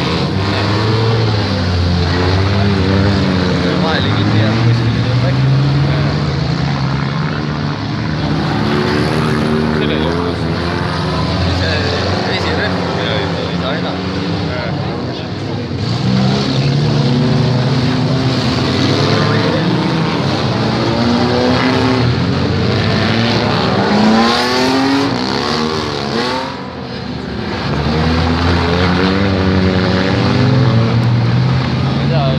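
Demolition derby cars' engines revving up and down, several at once, their pitch rising and falling.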